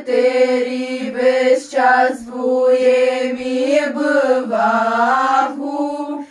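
A group of women's voices singing a Christmas carol unaccompanied, largely in unison, in long held notes with brief breaks between phrases.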